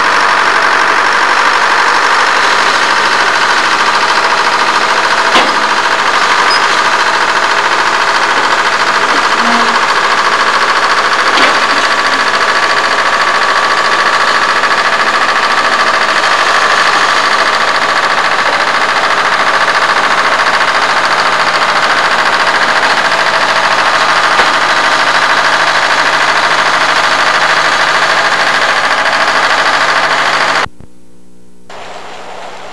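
Diesel engine of a large wheeled feller buncher running steadily and loudly as the machine drives down off a trailer ramp onto pavement. Two short, sharp clicks come about five and eleven seconds in.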